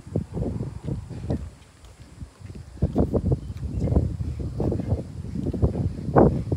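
Footsteps with bumps and rubbing from a hand-held phone as its holder walks, uneven thumps about two a second.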